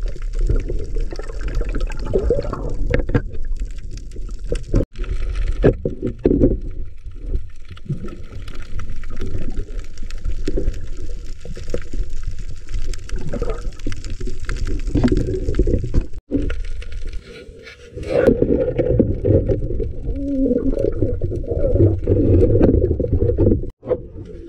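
Muffled water sloshing and gurgling around a camera in the water, a dull low rush with little treble. It breaks off abruptly for a moment about five and sixteen seconds in.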